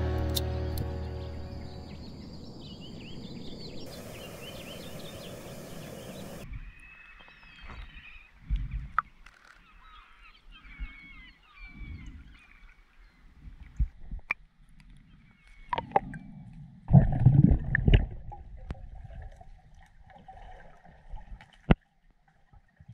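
Music fading out, then a few seconds of steady hiss, then birds calling over quiet water noise, with scattered low knocks and a louder splashing burst about three-quarters of the way through.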